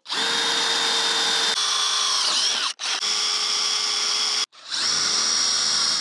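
DeWalt 20V cordless drill boring a bolt hole through the steel of a tractor grill guard, in three steady runs with short stops between them. In the first run the motor's pitch dips briefly as the bit bites into the steel.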